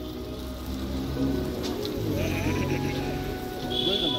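Music with several sustained tones and a wavering melody line drifting up and down through the middle.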